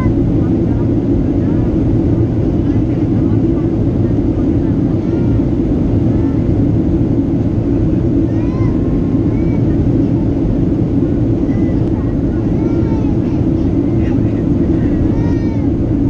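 Steady cabin noise of a Boeing 737-700 in flight, heard from a window seat over the wing: a constant low rush of its CFM56-7B engines and airflow. Faint voices come through now and then.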